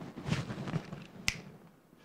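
A single sharp click about a second in.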